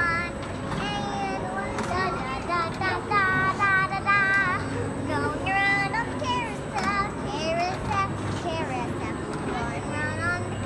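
Young children's high voices chattering and sing-song squealing, with no clear words, over a steady low background hum.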